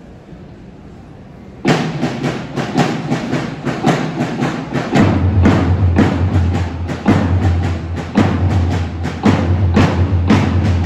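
Marching drum cadence starting about two seconds in, a steady beat of roughly three strokes a second, with a deep low drone joining about halfway through.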